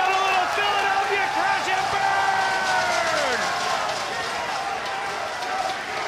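A voice holding a long drawn-out shout for about three seconds, its pitch dropping away at the end, over arena crowd noise that carries on after it.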